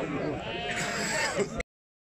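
A Sardi sheep bleating once, a drawn-out call of about half a second, over men's talk.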